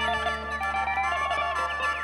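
Isan folk music from a pong lang ensemble: a plucked lute melody with short bending notes over steady held tones and a constant low drone.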